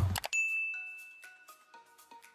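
Sound effect of a subscribe-button animation: a short click and a bright bell-like ding about a third of a second in that rings and fades over about a second, followed by a few soft chime notes stepping down in pitch.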